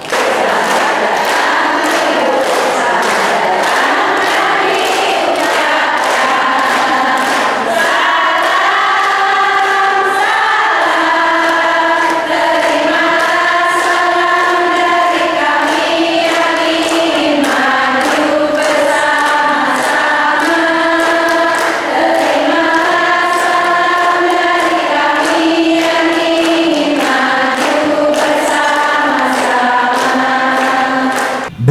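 Large crowd of women singing a song together in unison, with hand claps keeping time.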